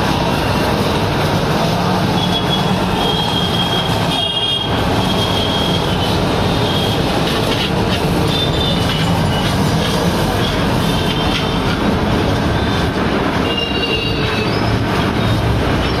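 Three-piston HTP pressure-washer pump, belt-driven by a single-phase electric motor, running steadily under load while its high-pressure water jet hits a motorbike. Brief high whistling tones come and go over the even noise while a hand sets the pump's pressure-regulating valve.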